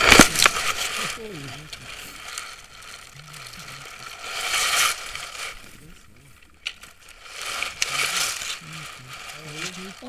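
Tandem paragliders landing in tall grass: knocks and a scrape as they hit the ground, then grass and harness rustling in two swells as they lie in it, with soft low voices.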